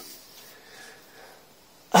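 Quiet room tone, then a short, loud cough from a man right at the end.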